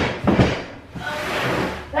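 Large cardboard shipping box being handled on the floor: a couple of knocks in the first half second, then a scraping shuffle as it is moved.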